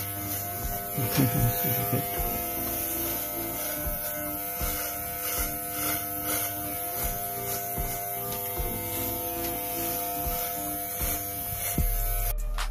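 Corded electric hair clippers running with a steady buzz as they cut short hair, passing over the nape of the neck and the top of the head.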